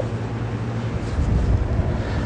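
A dry-erase marker writing figures on a whiteboard, over a steady low hum with a faint hiss.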